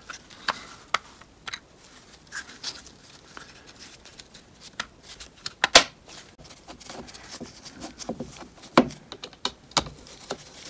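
Plastic parts of a Mini R53 door lock actuator clicking and knocking as the housing is handled and fitted back together by hand: scattered small clicks, with two louder knocks, one just past the middle and one near the end.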